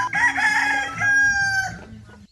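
A rooster crowing once. Its final long note falls slightly and fades out near the end.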